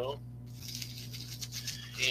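A cardboard box holding a folding stove being handled and moved, giving a steady rustling noise over a low electrical hum.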